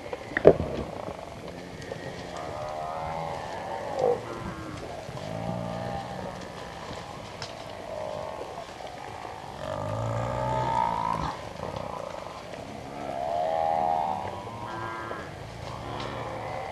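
A herd of Cape buffalo lowing and bellowing, a series of drawn-out calls that overlap and are loudest around ten and fourteen seconds in. A single sharp knock about half a second in is the loudest sound.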